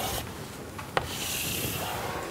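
Chalk scraping across a blackboard as curved outlines are drawn, a steady scratchy rubbing with one sharp tap about halfway through.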